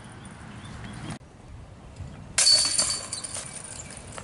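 Disc golf basket chains rattling as putts strike them. The first rattle dies away and cuts off just after a second in. A fresh hit comes about two and a half seconds in and jangles for about a second.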